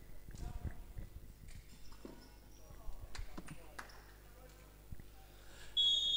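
Faint sports-hall ambience: distant players' voices and occasional ball thuds and knocks echoing off the indoor court. A brief high tone starts just before the end.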